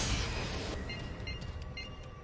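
Rumbling noise from the anime's sound effects, fading steadily, with a few faint high tones coming in about halfway through.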